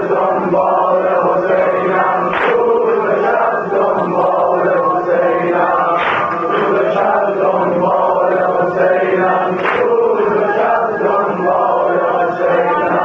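A congregation of male mourners chanting a Shia noha refrain in unison, many voices together. An accent in the refrain comes back about every three and a half seconds.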